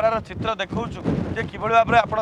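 A man talking, with wind buffeting the microphone in a low rumble that swells about a second in.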